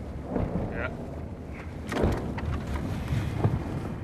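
Car driving, heard from inside the cabin: a steady low rumble with a few dull thumps, the loudest about two seconds in.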